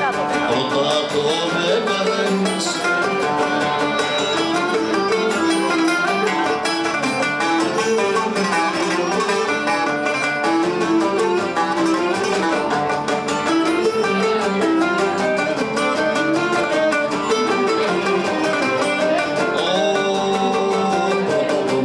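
Cretan lyra bowed in a lively melody over strummed laouto accompaniment: live Cretan folk music, running steadily.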